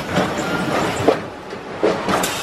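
Paris Metro car standing at a station with its doors opening: several sharp clunks and knocks about a second apart over the steady noise of the train.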